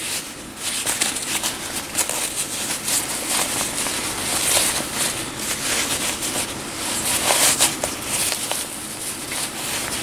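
Fabric rustling and crinkling, with scattered small clicks, as hands turn a sewn bag of PUL (polyurethane-laminated fabric) and cotton right side out through the opening in its zipper seam.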